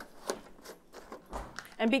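Faint handling sounds of a plastic gallon milk jug being carried and its cap twisted off: light clicks and scuffs, with one soft low thump about a second and a half in. A woman starts speaking at the very end.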